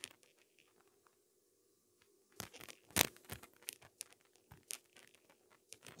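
Near silence for about two seconds, then a scatter of small clicks and rustles of hands handling things at the bench, with one sharper click about three seconds in.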